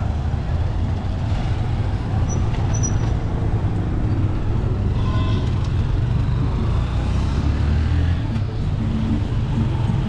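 Street traffic on a busy town road: motorcycle and car engines running, a continuous low rumble with no break.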